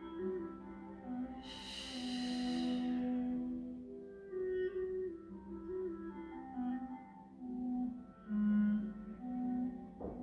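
Soft instrumental background music: a slow melody of long held notes. A brief hiss about one and a half seconds in.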